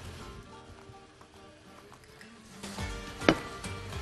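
Quiet background music with steady held tones, with one sharp click about three seconds in, when a utensil or dish is knocked at the pan.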